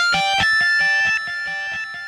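Yamaha MODX keyboard playing its 'Lead Feedbacker' distortion electric guitar sound: a quick run of notes played on the keys, ringing on and overlapping. It gets quieter about a second in as the notes die away.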